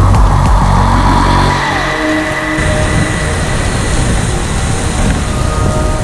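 Bass-heavy electronic music that stops about halfway in, giving way to the loud, steady rush of whitewater pouring over a big waterfall.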